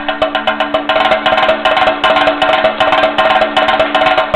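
Chenda, the Kerala cylindrical drum, played with a stick in a fast, even stream of sharp strokes, several a second, over a steady held note.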